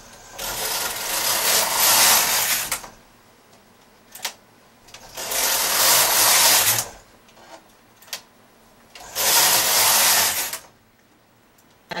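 Knitting machine carriage pushed across the needle bed three times while short-rowing, each pass a rushing slide lasting a second or two, with a few short clicks in the pauses between passes.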